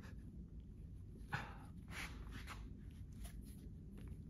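Faint handling and rubbing as hands strain to pull the plug adapter out of a Tesla mobile connector, with a few short breaths of effort between one and three seconds in. The stiff plug does not come free.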